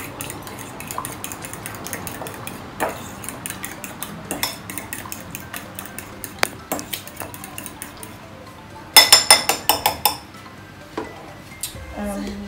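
Eggs being whisked by hand with a metal utensil in a glass blender jar: fast clinking of metal against glass. About nine seconds in comes a run of louder, ringing clinks.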